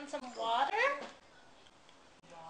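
A toddler's short, whiny vocal sound that rises and falls in pitch, lasting about a second near the start.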